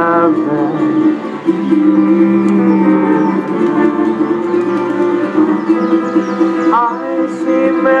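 Live Hawaiian band playing a slow ballad: plucked acoustic guitar and upright bass under long held notes, with a voice bending into a new phrase near the end.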